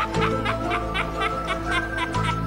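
A rapid cackling laugh, about five beats a second, over background music with steady sustained notes.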